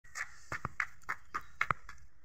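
A toddler's footsteps on a concrete yard: about nine light, quick clicks at uneven spacing, the loudest two shortly after half a second and near the end.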